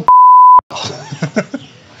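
A censor bleep: one steady beep of about half a second, laid over a spoken word, that cuts off abruptly. It is followed by a man laughing.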